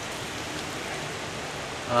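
Steady rain falling, heard as an even hiss.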